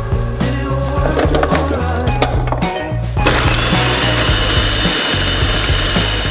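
Background music with a steady bass line; about three seconds in, an electric food processor starts up with a steady whirring whine, blending onion, carrot and garlic until finely chopped.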